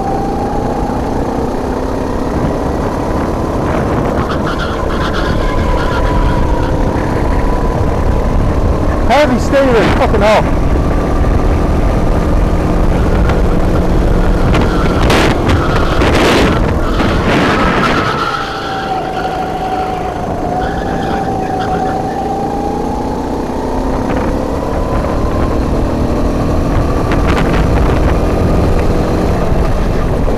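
Go-kart engine heard from onboard, running hard with its pitch rising along the straights and dropping as it slows for a corner about eighteen seconds in. Brief rushes of noise cut across it around nine and fifteen seconds in.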